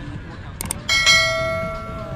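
Subscribe-button overlay sound effect: a quick double mouse click, then about a second in a bright bell ding that rings on and slowly fades.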